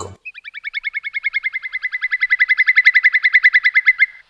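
Whimbrel calling: one long rapid trill of short, even notes, about eleven a second, growing louder as it goes.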